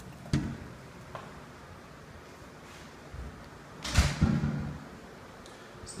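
A door knocking shut: a sharp knock shortly after the start, then a louder thud about four seconds in followed by a couple of softer thuds.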